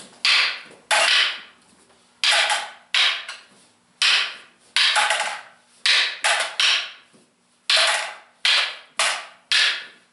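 Sticks striking sticks in a double-stick partner drill: about fourteen sharp clacks, some in quick pairs from a forehand strike followed by a backhand strike, each with a short ringing decay.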